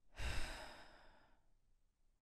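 A boy's heavy sigh: one breathy exhale, loudest at its start and trailing off over about a second.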